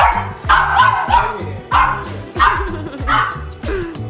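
Small dogs barking in a rapid series of about nine short, high yips, excited and begging for food. Background music with a steady beat plays underneath.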